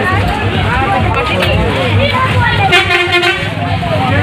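A vehicle horn gives one steady honk, lasting under a second, about three seconds in, over people chattering and a low steady hum.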